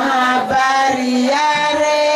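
A chorus of women singing a tari song, accompanied by hand-beaten skin frame drums.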